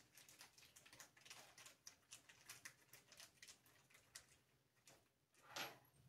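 Near silence with faint, scattered light clicks and taps of small hardware being handled on a tabletop.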